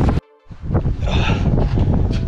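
Wind buffeting the camera microphone, broken by a sudden dropout of about a quarter second just after the start before the rushing noise returns.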